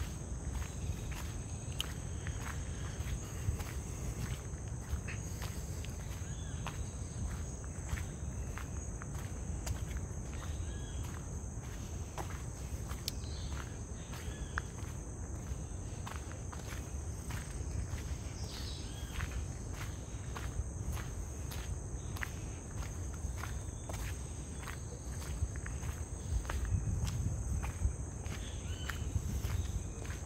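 Footsteps crunching on a gravel road at a steady walking pace, over a steady high-pitched drone of rainforest insects.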